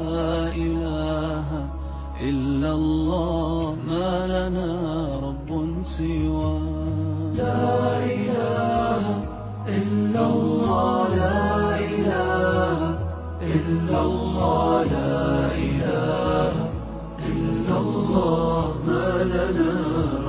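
Background music: a voice chanting an Arabic Islamic nasheed in long melismatic lines over a steady low drone.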